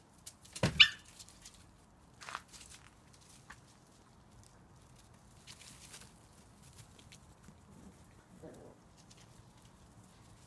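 A Border Collie puppy gives one short, sharp yelp about a second in, followed by quiet rustling of small paws on leaves and grass, with a faint short sound near the end.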